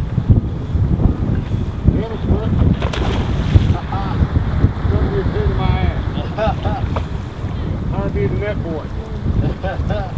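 Wind buffeting the microphone in a steady, gusting low rumble, with faint voices of people talking in the background from about four seconds in.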